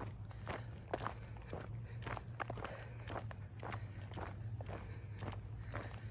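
Footsteps of a person walking at a steady pace, about two steps a second, over a low steady hum.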